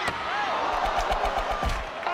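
Ice-hockey arena crowd yelling, with several sharp knocks and clacks of sticks and puck on the ice and boards, and low thuds near the end.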